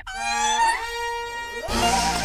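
Background-score sound effect: a held musical tone, then a loud whoosh starting about one and a half seconds in.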